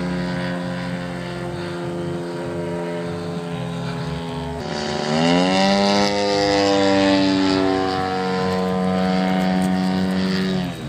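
DLE 111 twin-cylinder two-stroke gas engine of a large RC Yak aerobatic plane in flight, running steadily. About halfway through, its pitch dips, then climbs again, and it grows louder.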